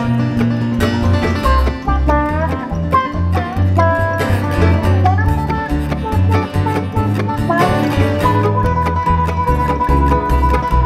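Bluegrass string band playing an instrumental passage without vocals: banjo and other plucked strings, including mandolin, over a steady stepping bass line, with some notes sliding in pitch.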